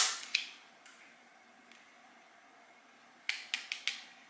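Tarot cards being handled on a table: a few short clicks and card slides at the start, then a quick run of about four more clicks near the end.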